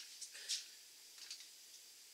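Faint handling noise of plastic brewing gear being picked up: a few short clicks and rustles, the sharpest about half a second in.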